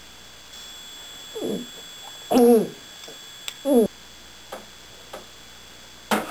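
A man drinking beer from a tipped-up bottle, with three short throaty vocal sounds about a second apart, each falling in pitch, the middle one loudest. A few faint clicks follow.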